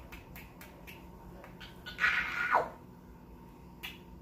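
Cockatiel giving one short call about halfway through, ending in a falling note, amid soft scattered clicks.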